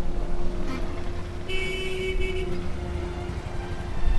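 Vehicle traffic rumble and crowd voices, with a vehicle horn sounding for about a second midway.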